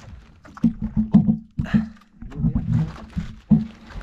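Irregular knocks and thumps as a gill net holding caught mackerel is hauled in over the side of a wooden outrigger boat, over a steady low hum.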